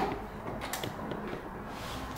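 A sharp click, then a few faint clicks and creaks from hands handling a small black plastic ignition-lock unit wired to a laptop.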